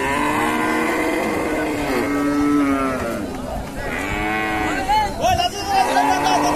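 Cattle mooing: one long, drawn-out moo for about three seconds, then a second, shorter moo about four seconds in.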